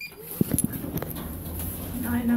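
A short electronic beep from the lift right at the start, then a few sharp clicks and knocks about half a second in and once more about a second in, with a dog whining.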